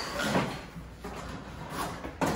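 A Toro 30-inch Turfmaster HDX walk-behind mower being tipped up onto its side: a clatter of the steel deck and handle in the first half second, then quieter rattling and shuffling as it is set down.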